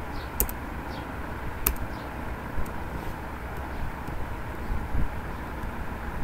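A handful of separate computer keyboard keystrokes, spaced a second or more apart, deleting a mistyped word. Under them runs a steady low background rumble.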